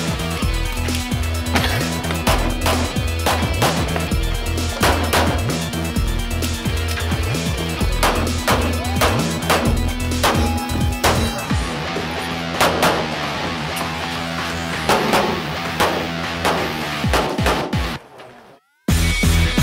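Background music with a steady beat, over many shots from a Smith & Wesson M&P Pro 9mm pistol fired in quick strings during a practical-shooting stage run.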